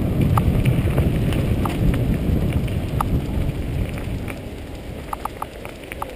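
Wind buffeting the microphone of a camera on a moving mountain bike, mixed with the rumble of its tyres on a rough track. The rumble eases off toward the end, and a few short high chirps come through, the last ones in a quick cluster near the end.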